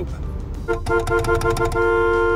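Truck's two-tone horn honking repeatedly, starting just under a second in, with the last honk held long, heard from inside the cab.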